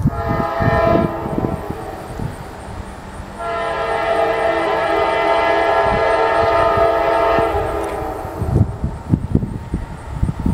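Air horn of an approaching CSX freight train led by a GE CW44AC locomotive, sounding a multi-note chord: a blast at the start trailing off, then one long steady blast from about three and a half to eight seconds in. Gusts of wind rumble on the microphone underneath, loudest near the end.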